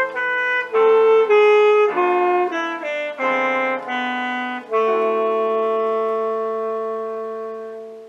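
Alto saxophone with piano accompaniment playing a quick run of notes, then a long held final note from about five seconds in that slowly fades away.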